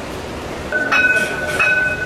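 City bus passing close by, its brakes letting out a high, steady squeal from a little under a second in, with a second, higher note breaking in and out three times over it.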